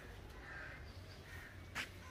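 Faint bird calls: a couple of soft short calls, then a short sharp one near the end.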